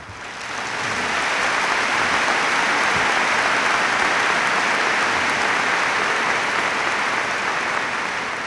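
Large audience applauding: the clapping swells over the first second, holds steady, and tapers off near the end.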